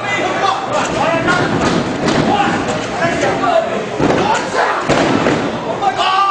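A string of thuds from wrestlers striking each other and landing on the wrestling ring, over shouting and chatter from the crowd.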